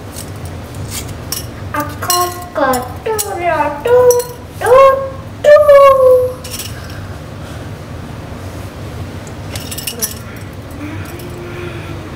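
Grilled egg being peeled by hand over a bowl, with small clicks and clinks of shell against shell and bowl. A high-pitched voice makes short sliding calls from about two seconds in to six and a half, louder than the peeling.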